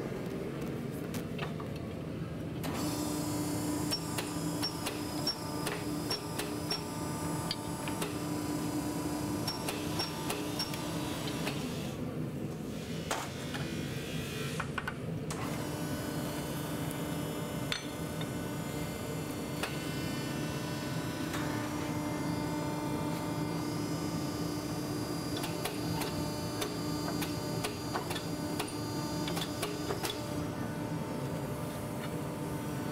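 Hydraulic forging press running: a steady motor-and-pump hum with a pitched drone and light ticks, which drops out for a few seconds around the middle.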